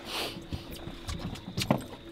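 Handling noise as gear and clothing are moved about: a soft rustle at the start, then a few scattered light knocks and clicks, the sharpest near the end.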